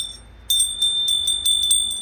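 Small heavy metal snowman-shaped handbell being shaken, its clapper striking quickly over one high ringing tone, starting about half a second in.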